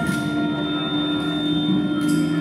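Large wind, accordion and percussion ensemble holding long sustained tones, with no beat. A steady held note in the middle register comes in just after the start, with a thin high tone above it.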